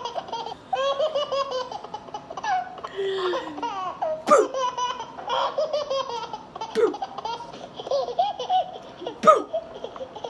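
A woman laughing hard and high-pitched in long runs of giggles, with three sharp clicks a couple of seconds apart.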